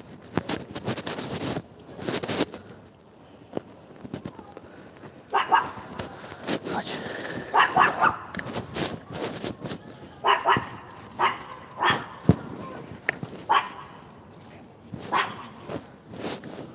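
A dog barking in short, separate barks, some coming in quick pairs and triples, spread through the second half. Before that there are a couple of seconds of rustling noise.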